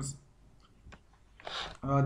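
A man's narration trails off into a brief quiet pause holding a couple of faint clicks, then a short intake of breath just before he speaks again.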